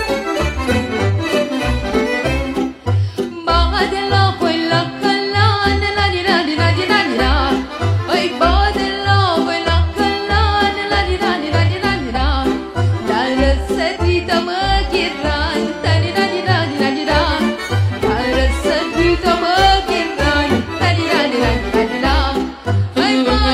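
Live Romanian folk band music: a melody on bending, fiddle-like lines over a steady bass beat.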